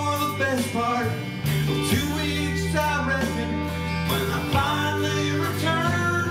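Live alt-country band playing: strummed acoustic guitar, electric guitar, bass guitar and keyboard, with sustained bass notes under shifting melodic lines.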